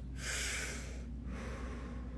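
A man drawing a deep breath in through the mouth: a long noisy inhale of about a second, then a shorter, softer second pull of air.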